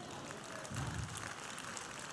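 Faint applause from a church congregation.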